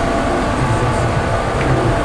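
Steady low rumble of street traffic, with a faint low engine hum in the middle.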